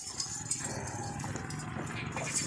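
A pen of goats moving about on dirt: scattered hoof steps and shuffling over a steady low background noise.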